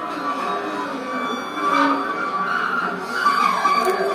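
Tenor saxophone and a cymbal worked against a snare drum head in free improvisation: sustained, wavering squealing and scraping tones with no steady beat.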